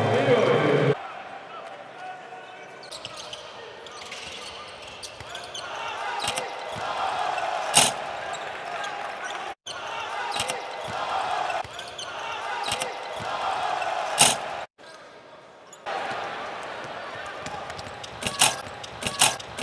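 Basketball arena crowd noise from the game sound of highlight clips, with two sharp loud bangs of ball on rim or backboard about eight and fourteen seconds in. A burst of music cuts off about a second in.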